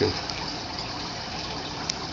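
Aquarium filter running, a steady rush of moving water. A faint click near the end.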